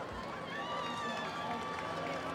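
Background murmur of a stadium crowd with faint scattered voices, and a thin steady tone held underneath.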